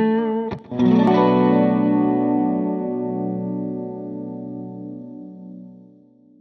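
Electric guitar playing a short intro phrase: a few quick notes, then a chord struck about a second in that rings out and slowly fades away.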